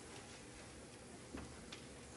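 Quiet hall room tone with a few faint, irregular clicks and small knocks, two of them close together in the second half.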